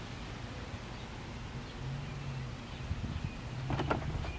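Low outdoor background noise: a faint low rumble and hum, with a few small clicks shortly before the end.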